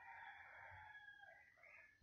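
Faint, distant bird call: one drawn-out call of about a second and a half with a few pitched tones, fading out near the end.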